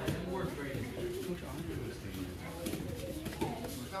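Indistinct voices of children and a coach talking in the background, with one called word from the coach at the start.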